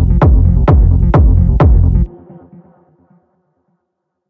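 Techno track with a four-on-the-floor kick drum over heavy bass, about two kicks a second. The music cuts off suddenly about two seconds in, leaving a faint tail that dies away within about a second.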